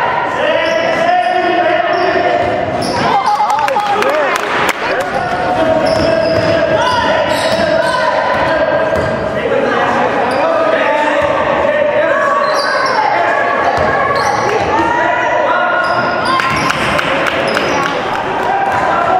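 Basketball game in a large gym: the ball bouncing on the hardwood court amid overlapping shouts from players and spectators, with the hall's echo.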